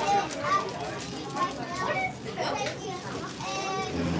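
A group of children chattering and calling out at once, many high voices overlapping with no single speaker clear.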